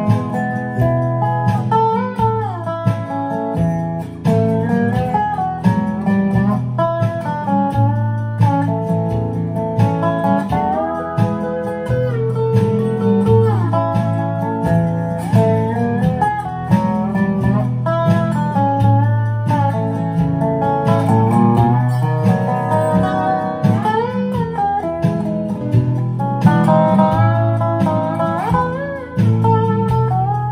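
Dobro (squareneck resonator guitar) played lap-style with a slide bar, picking a melody in A with frequent slides up and down between notes, over a backing rhythm track.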